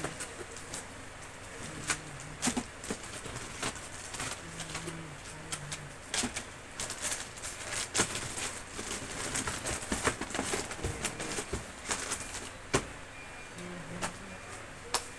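Items being handled and packed at a shop counter: a busy run of small clicks, taps and plastic or packet rustles, with a sharper knock about eight seconds in and another near the end.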